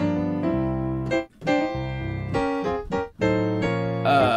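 Sampled grand piano ('Full Grand' preset of a software piano plugin) played from a MIDI keyboard: sustained chords, among them a G7, one after another. There is a brief break about a second in and another about three seconds in.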